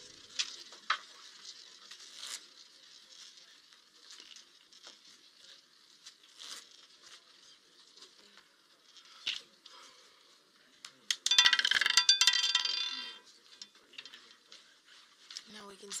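Roulette ball clattering and bouncing through the wheel's pocket separators for about two seconds, some eleven seconds in, as it drops into its number; a few faint ticks before it.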